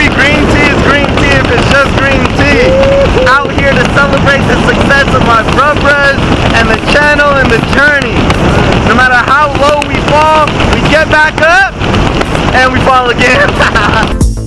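Loud wind roar buffeting the microphone, with a man's voice shouting in short, garbled bursts that break through it again and again.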